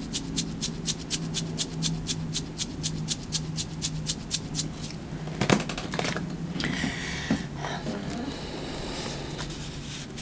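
A plastic K-cup coffee pod shaken close to the microphone, its contents rattling about five times a second for roughly the first half. Then a single knock, followed by softer handling and rustling of the next pod.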